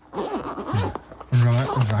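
Zipper of a fabric GoPro travel kit pouch being pulled open, a quick rasping run in the first second.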